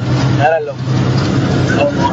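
A vehicle's engine running with a steady low hum, heard from inside the cab, with voices over it.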